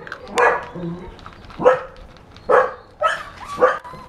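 A dog barking, five short barks spread unevenly across the few seconds.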